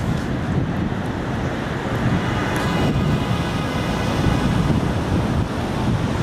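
Steady city street noise: a low, even rumble of traffic with wind on the microphone.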